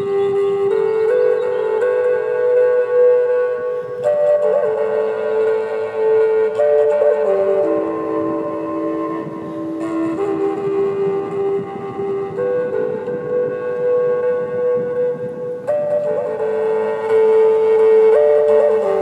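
Native American-style wooden flute playing a slow, meditative melody of long held notes, shifting pitch every few seconds.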